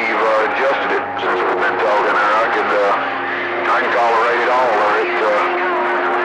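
Voices received over a CB radio, with steady tones lying under them.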